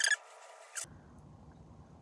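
Wooden lip liner pencil drawn across the lips: a short squeaky scratch at the very start and a shorter one just before a second in.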